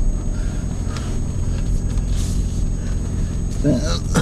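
Car engine and road noise heard from inside the cabin, a steady low hum as the car pulls out into the road.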